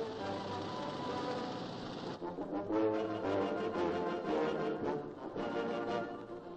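Background music led by brass instruments. About two seconds in it grows louder, with shorter, quicker notes.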